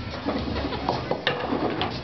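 Bowling-alley clatter: sharp knocks and rattles of pins and lane machinery, with several distinct knocks from about a second in to near the end.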